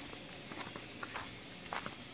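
A few faint footsteps on a dirt road, roughly one every half second or so, over a low outdoor background.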